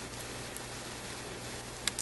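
Steady low hiss of room tone with a few faint small clicks, one a little sharper near the end, from small plastic pieces being handled.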